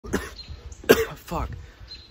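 A man coughs twice; the second cough, just under a second in, is the louder one, and a swear word follows. It is an allergy-driven coughing fit, by his own account.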